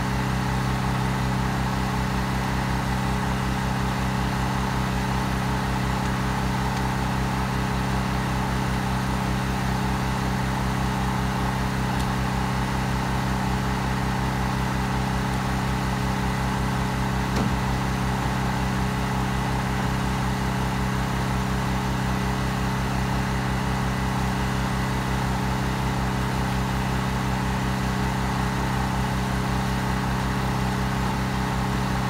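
An engine idling steadily at an even, unchanging pitch, with one brief tap about midway.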